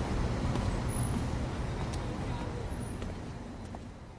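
City street ambience: a steady low rumble of traffic with a general hiss of noise, slowly fading out toward the end.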